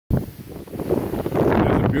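Wind buffeting the microphone on an open beach, with the rush of surf beneath it; the low rumble swells over the first second and a half.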